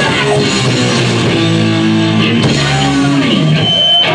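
A live rock band playing loudly, with guitar chords held for a couple of seconds mid-way, recorded on a mobile phone in a club so the sound is harsh and compressed.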